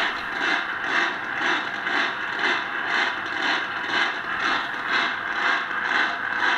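Static from the Specific Products WWVC receiver's speaker, swelling and fading about twice a second. The pulsing is the beat of a function generator set 2 Hz off 10 MHz against the receiver's signal.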